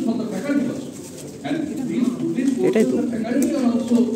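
A man's voice speaking into a podium microphone, carried over the hall's loudspeakers.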